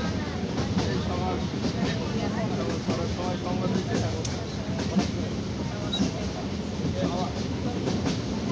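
Train running at speed, heard from inside a carriage at an open window: a steady rumble with the wheels clicking over the rail joints.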